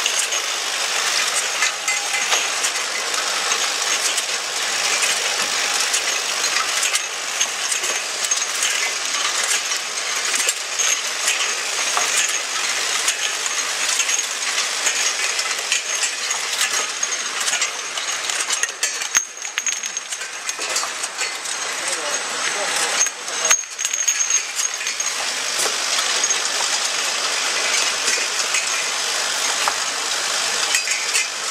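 Automatic oral-liquid filling and ROPP capping machine running, a steady busy clatter of many small clicks with small bottles clinking against each other and the machine's parts. A thin high whine runs under it.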